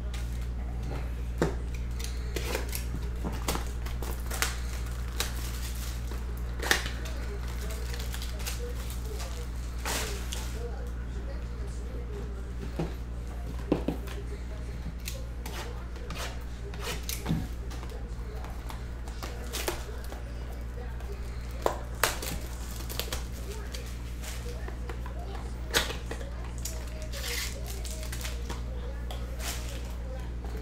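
Small cardboard trading-card boxes and plastic card holders handled on a table mat: scattered light taps and clicks, over a steady low electrical hum.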